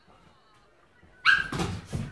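Near silence, then a dog gives one sudden sharp, high-pitched bark a little over a second in, followed by brief rough noise.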